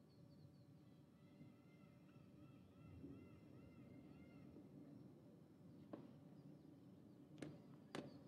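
Near silence: faint outdoor ambience with a run of faint repeated chirps in the middle and a few faint clicks near the end.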